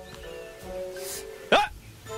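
Film score with held, sustained notes, cut by a man's short shouted "Hey!" that drops sharply in pitch about one and a half seconds in.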